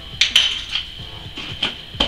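Metal teaspoon clinking against a small drinking glass while sweetener is added: a handful of sharp taps, the loudest two close together near the start.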